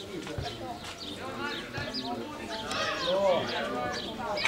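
Several children's high voices shouting and calling over one another on a football pitch, getting louder and busier in the second half.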